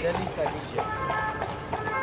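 People's voices talking, one voice holding a long steady note about a second in.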